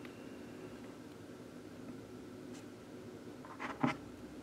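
Quiet room tone with a steady faint hum, broken by one short, sharp sound near the end.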